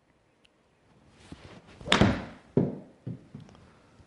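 A slow golf swing with a hybrid club: the club swishes through and strikes the ball sharply off the hitting mat about two seconds in. Two duller thuds follow.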